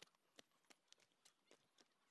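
Very faint footsteps on a dirt path, about three steps a second, each a short sharp click.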